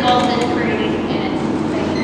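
Many people talking at once: overlapping conversation and chatter filling a room.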